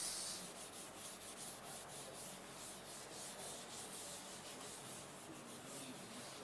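A felt chalkboard duster rubbed back and forth over a chalkboard, erasing chalk writing in quick, even strokes, about three to four a second, thinning out near the end.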